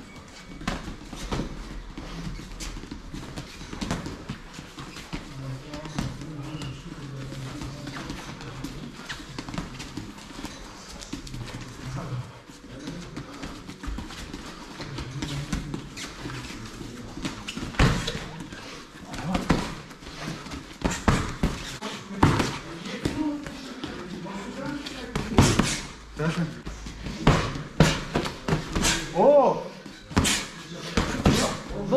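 Boxing sparring: padded boxing gloves smacking against gloves, arms and headgear, with shuffling footwork on the ring mat. The hits come more often and land harder in the second half.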